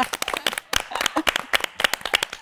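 Hands clapping in applause, a quick, irregular run of overlapping claps.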